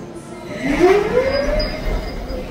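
Spinning motorbike amusement ride running with a steady rumble. About half a second in, a tone rises over about a second and then holds.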